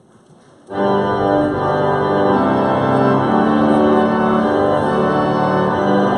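Pipe organ starting to play: after a quiet room, full sustained chords come in suddenly under a second in and move on from chord to chord.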